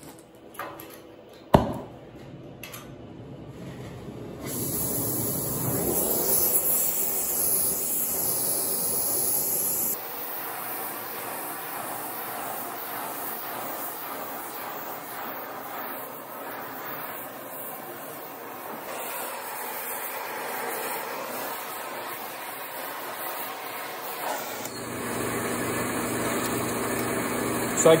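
Oxy-fuel cutting torch hissing steadily as it cuts through thick steel plate, with a single sharp pop near the start.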